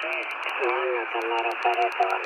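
Single-sideband amateur radio voice on 40 m lower sideband, heard through the Radtel RT-950 Pro handheld's speaker: a thin, narrow-band voice over steady hiss. The beat frequency oscillator is being adjusted while it plays, to bring the voice to its natural pitch.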